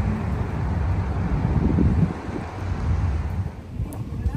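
Wind buffeting the microphone: an uneven low rumble, loudest about halfway through and easing near the end.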